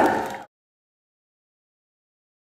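Silence: the last of a steady pitched sound fades out within the first half second, then the sound track is completely silent.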